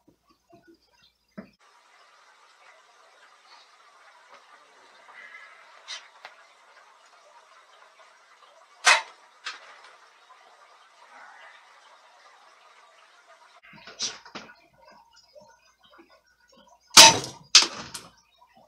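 Crosman C11 CO2 air pistol firing .177 shots at steel food cans: sharp pops and metallic hits, one loud shot about halfway through, a few more around three-quarters of the way, and a loud close pair near the end. None of the shots goes through the can tops.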